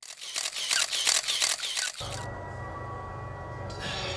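Camera shutter firing in a rapid burst, about six clicks a second, for roughly two seconds. It then gives way to a steady low hum with a few faint steady tones.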